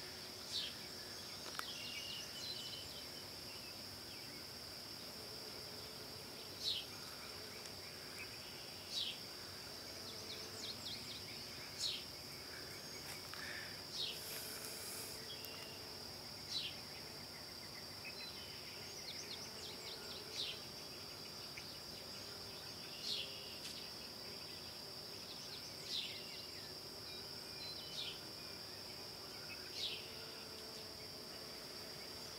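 Forest ambience: a steady high-pitched drone of insects, with a short falling call repeated every two to three seconds, likely a bird.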